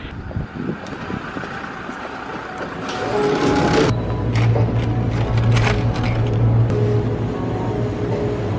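Street ambience for about three seconds, then, after a cut, a shop interior with a steady low hum and music playing.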